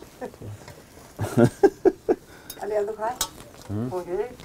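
Brief, quiet voices, with a few faint clicks as fingers crumble butter into a flatbread on a steel plate.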